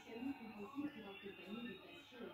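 Faint voices talking in the background, with no clear sound from the wax seal stamp being held down.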